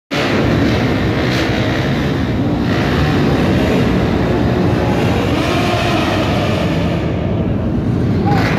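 Sport motorcycle engines held at high revs, with tyre smoke rising from one bike as from a burnout. The sound is a loud, unbroken din that echoes under a low roof.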